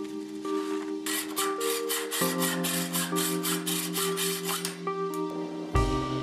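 A 6061 aluminum knife handle scale rubbed back and forth on a sheet of sandpaper laid flat, in quick even strokes about four a second, which stop about a second before the end. Background music with steady chords plays throughout.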